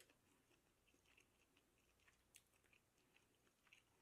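Near silence, with a few faint, brief clicks and smacks of quiet eating: a fork working soft grits and chewing.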